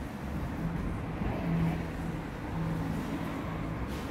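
Steady low rumble of city street traffic, with a faint low hum that comes and goes several times.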